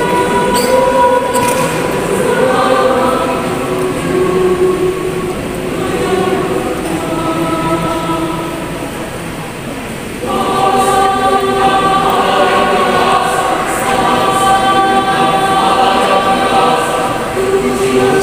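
Mixed youth choir singing a sacred song in Indonesian, in several parts. The singing eases into a softer stretch, then swells louder a little past halfway.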